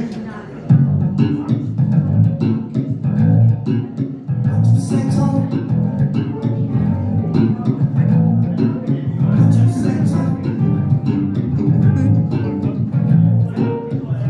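Live band kicking into a song about a second in: an electric bass guitar line carries the low end under a drum kit, with cymbal crashes around five and ten seconds in.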